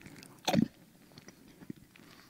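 A single short, crunchy biting noise made with the mouth into a close headset microphone, imitating a bite into an apple, followed by a few faint mouth clicks.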